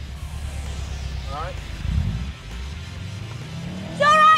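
Background music over a Subaru Impreza's turbocharged flat-four engine idling, with a brief voice sound about a second and a half in.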